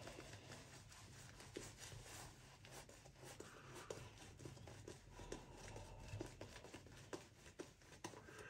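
Faint, irregular scratching of a 1950 Gillette Rocket Flare safety razor cutting stubble through shaving lather on an against-the-grain pass.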